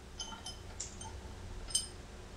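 Faint, light metallic clinks and ticks, a handful over two seconds, from steel axle hardware being handled and worked loose by hand.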